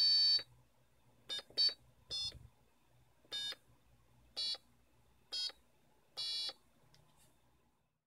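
Buzzer on an Arduino breadboard keyboard sounding short, buzzy electronic notes, one for each pushbutton press. There are about eight beeps at uneven intervals, the first the loudest, and they stop about two-thirds of the way through.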